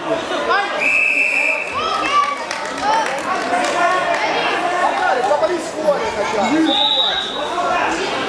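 Voices of coaches and spectators talking and calling out, with two steady blasts of referees' whistles: one lasting about a second, about a second in, and a shorter, higher-pitched one near the end.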